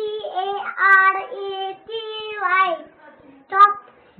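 A young child singing wordlessly in a high voice, holding drawn-out notes for about three seconds, then a short sharp vocal burst near the end.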